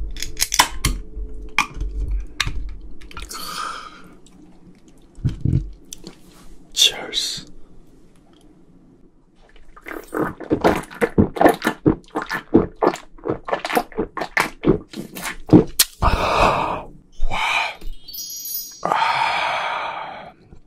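A can of beer is opened with clicks at the start. From about ten seconds in, a man takes a long drink with a quick run of gulps. He follows it with breathy exhales of satisfaction.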